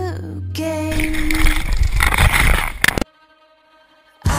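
A toilet flushing: a loud rush of water that cuts off suddenly about three seconds in, with a song fading out just before it.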